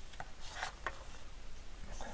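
A thin plastic tin lid being handled, set down and pressed by hand onto double-sided tape on a fan hub, giving light rubbing and a few faint clicks in the first second.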